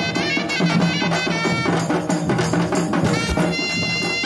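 Indian folk dance music: a wavering melody over steady drumming, with a held, steady-pitched wind tone coming in near the end.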